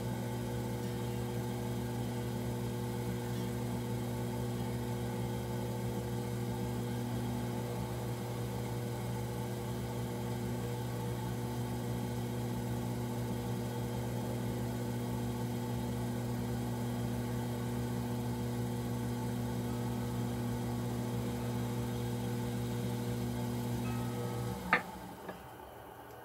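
Electric potter's wheel motor running with a steady hum while the wheel spins. It cuts off near the end, followed by a sharp click.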